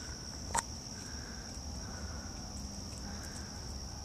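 Steady high-pitched insect trill, as of crickets, with a single click about half a second in.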